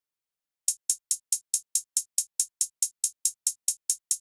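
A programmed hi-hat sample playing alone from the FL Studio sequencer. It comes in just under a second in and repeats in an even roll of short, bright ticks, about five a second.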